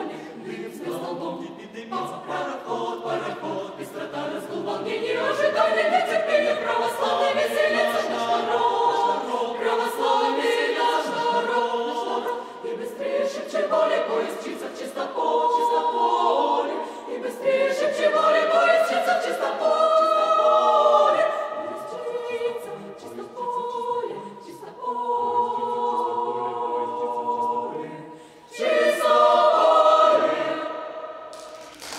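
Mixed choir of women's and men's voices singing a cappella in several parts, rising to a loud closing chord that enters suddenly near the end.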